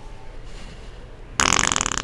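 A sudden loud fart sound about one and a half seconds in: a rapid, rattling buzz lasting under a second.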